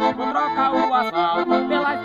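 Piano accordion playing an instrumental passage: a quick run of melody notes over held lower chords.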